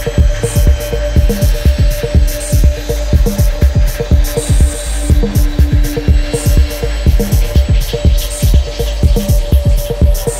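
Minimal electronic microhouse track: dense, fast, clicky, scraping percussion over a deep bass and a steady held tone, with a second tone held for a few seconds in the middle and short hissy bursts on top.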